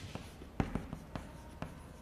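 Chalk writing on a blackboard: a quick, irregular run of short taps and scratches as Chinese characters are written stroke by stroke.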